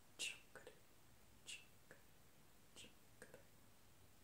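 Faint whispering from a woman's voice: three short, breathy hisses about a second and a bit apart, each followed by a softer, lower murmur.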